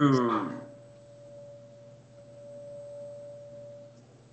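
A steady pure tone held at one pitch, heard alone over a faint low hum once a short stretch of speech at the start ends.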